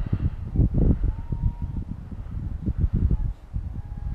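Wind buffeting the camera microphone: an irregular low rumble that swells and dips, with a faint thin tone in the distance twice.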